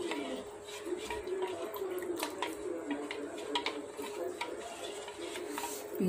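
A spoon stirring thin spiced water in a stainless steel bowl, with light liquid sloshing and scattered small clicks of the spoon against the metal.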